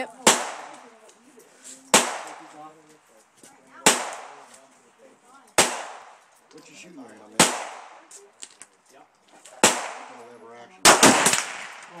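Single shots from a Ruger LCP .380 ACP pocket pistol, fired slowly about every two seconds, each with a short echo. Near the end comes a quick burst of several shots close together.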